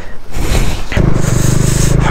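Motorcycle under way on a dirt and gravel road: a rushing haze of wind and tyre noise, with the engine's low, even running note growing louder about a second in.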